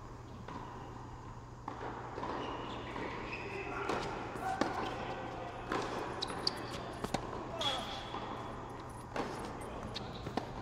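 Tennis rally on an indoor hard court: the ball is struck by rackets and bounces, making a series of sharp pops about a second apart, with short squeaks of players' shoes.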